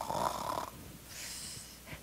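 A woman imitating a snore: a short rasping snore breathed in, followed by a fainter hissing breath out.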